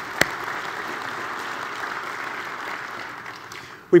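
Large conference audience applauding in a big hall, the clapping dying away near the end.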